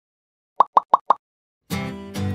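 Four quick cartoon-style pop sound effects in a row, then a bright musical jingle chord starting near the end: an edited transition sting leading into a logo card.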